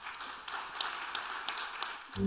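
Audience applauding, with a few sharper individual claps standing out, then cut off at the end.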